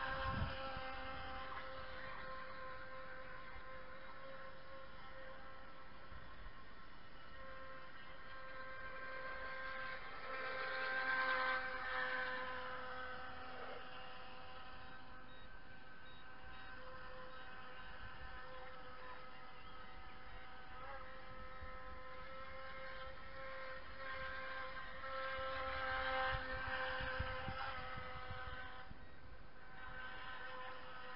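Small motor of a radio-controlled model boat whining steadily across the water, growing louder twice as the boat passes close, about ten seconds in and again near the end.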